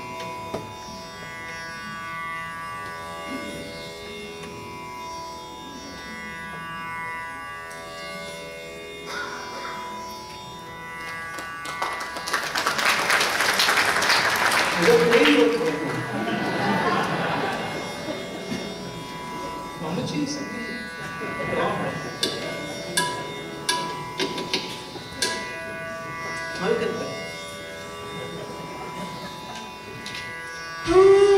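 A steady tanpura-style drone holding the tonic throughout. About twelve seconds in, a few seconds of audience applause, then a man's voice speaking. Later come a handful of sharp drum taps.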